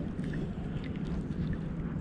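Wind rumbling on the microphone over open bay water, with a few faint small water splashes.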